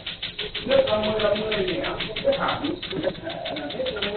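Tattoo-removal laser firing repeatedly, a rapid, steady clicking of about ten pulses a second, under people talking.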